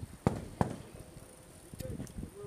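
Two short, sharp knocks about a third of a second apart, over faint background voices.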